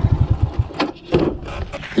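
Small motorbike engine idling, then switched off about half a second in, followed by a few short knocks as the bike is parked.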